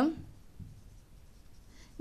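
Marker pen writing on a whiteboard, faint strokes, just after the tail of a spoken word.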